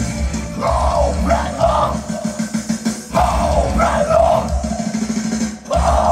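Live metalcore band playing loud, with drums and distorted guitars, and three bursts of screamed vocals over the top.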